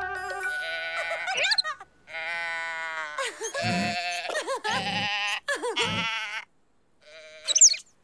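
Cartoon soundtrack of wordless character vocal noises: a long, quavering, bleat-like cry, then short calls and grunts with low thumps, over cartoon music. A high squeaky gliding effect comes near the end after a short silence.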